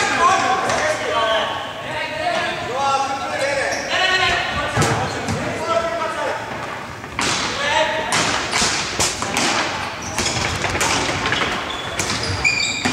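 Indoor hockey play in a large hall: voices call out and echo, and from about seven seconds in there is a quick run of sharp clacks and thuds of sticks and ball.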